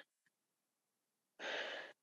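Near silence, then a heavy breath out, a sigh, about a second and a half in, from a tearful woman.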